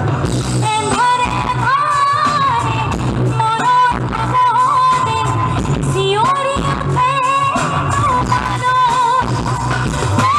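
A woman singing an Assamese song live into a microphone, her voice carrying a wavering melody, with a band playing steadily behind her.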